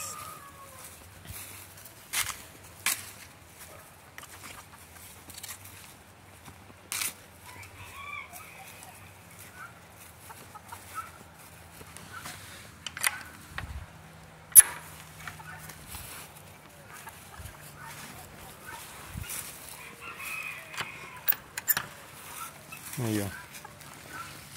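Bantam chickens clucking and calling faintly, with a few sharp clicks and knocks scattered through, the loudest about halfway, over a faint low steady hum.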